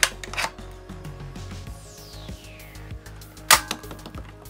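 Plastic clicks as the torpedo is fitted and the launcher on a Hasbro A-Wing toy is pushed down to arm it, then one loud sharp snap about three and a half seconds in as the button is pressed and the spring-loaded torpedo fires.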